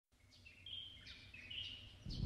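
Faint bird chirps: several short, high calls in quick succession.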